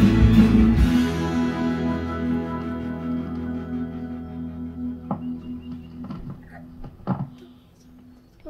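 A twelve-string acoustic guitar stops strumming about a second in, and its last chord rings on, fading slowly. Two soft knocks come later, about five and seven seconds in.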